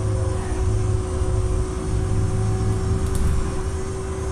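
Inside a moving city bus: a steady low rumble of the running bus with a constant hum over it.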